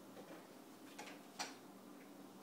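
Faint, scattered clicks from a puppy's claws on a tile floor, with two sharper clicks a little after a second in.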